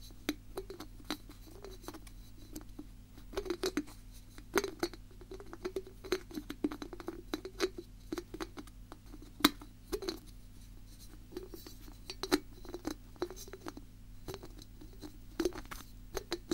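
Fingers tapping quickly and irregularly on hard objects close to the microphone, with small flurries of rapid taps and a few scratchy touches; one sharper tap about halfway through is the loudest.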